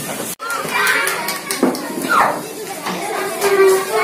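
Children chattering. The sound cuts out for an instant about half a second in.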